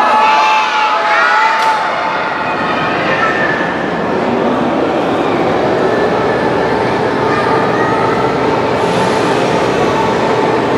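Steady hum and whir of electric lifting jacks raising a railcar body off its bogies, over the murmur of a crowd. A man's voice is heard briefly at the start.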